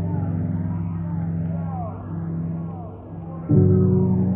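Lo-fi ambient drone music: sustained low chords with wavering, sliding tones above them, dull with no high end. The drone thins and dips about three seconds in, then swells back in suddenly and loud half a second later.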